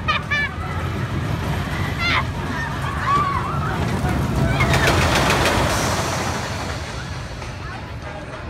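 Boomerang roller coaster train rushing past on its steel track, a swell of rumbling and rattling that peaks about five seconds in and then fades. Brief high-pitched shouts come before it.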